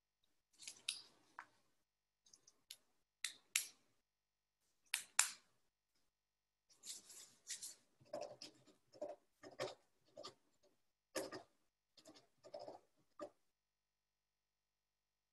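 Choppy video-call audio from a participant on a poor connection: about a dozen short, garbled fragments of sound, each cut off by dead silence.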